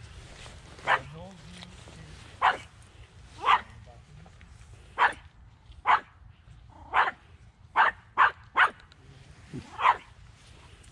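Pomeranian puppy giving about ten short, sharp barks at irregular intervals, with three in quick succession near the end.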